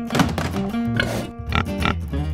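A young warthog grunts three times in short bursts over background acoustic guitar music.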